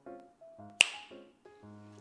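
A single finger snap a little under a second in, over background music.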